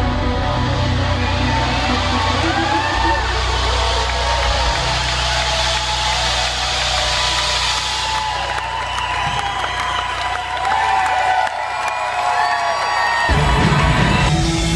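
Live rock concert: a sustained keyboard passage, with the crowd cheering, whooping and whistling over it. Near the end the full band comes back in heavily.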